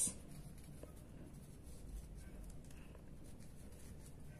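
Pen writing by hand on paper, faint scratching strokes as a word is written out.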